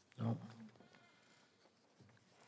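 A voice says a single short "No," then quiet room tone.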